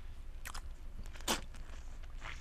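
Close-up mouth sounds of biting and sucking on a juicy lemon: two short, sharp bites, the second, about a second and a quarter in, the louder.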